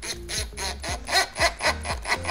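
Ridgid cordless impact driver driving a screw through a Z-clip tabletop fastener, hammering in short rattling pulses about four a second over a high motor whine, snugging the fastener down.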